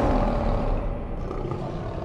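A lion roar sound effect from a logo sting, slowly fading.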